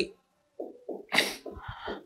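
Chalk scratching and tapping on a blackboard as a word is written, with one short, sharp sniff about a second in.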